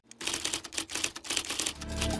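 A fast run of sharp clicks, about ten a second, starting after a brief silence, with music coming in near the end.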